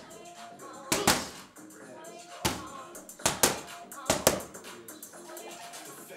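Boxing gloves smacking into focus pads in quick combinations: a double hit about a second in, a single hit, then two more doubles, with music and voices going on underneath.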